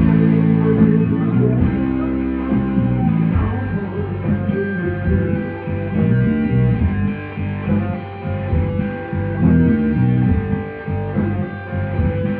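Live rock band playing, with electric guitar and bass guitar in the foreground.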